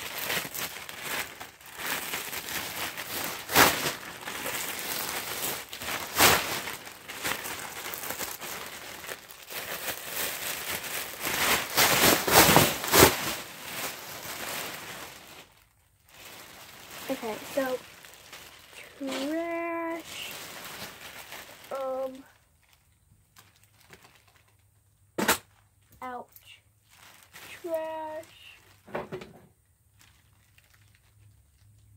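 Black plastic trash bag crinkling and rustling as it is handled: a dense, crackling rustle with sharp louder crackles, lasting about the first fifteen seconds.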